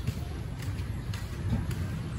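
Potting soil being added by hand into a plant pot, giving faint scrapes and light ticks, over a steady low rumble.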